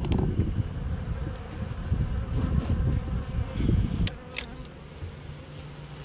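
Honeybees buzzing around an open hive close to the microphone, with a sharp knock at the start. About four seconds in the buzzing drops suddenly to a quieter, steadier hum.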